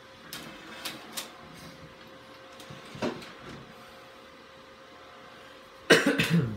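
A CD being loaded into the PC's HP CD-Writer Plus 7500 optical drive: three light clicks in the first second or so, then a single knock about three seconds in, over the steady hum of the running computer. A sudden loud sound comes right at the end.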